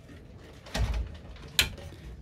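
The door of a small built-in oven being shut: a dull thud a little under a second in, then a short sharp click.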